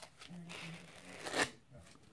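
Soft white packing pad rubbed and handled against a stainless multi-tool's open knife blade: a click at the start, then rubbing that ends in a louder swipe about a second and a half in.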